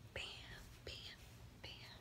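A woman whispering softly in a few short phrases.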